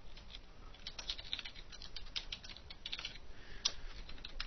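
Typing a line of code on a computer keyboard: quick runs of key clicks broken by short pauses.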